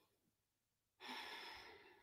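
A woman sighing: a single breathy exhale starts suddenly about halfway through, after near silence, and fades away over about a second.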